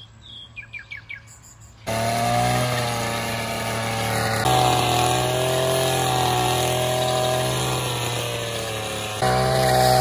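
A few bird chirps, then a petrol string trimmer starts up loudly about two seconds in and runs steadily at high speed, cutting through tall weeds and grass.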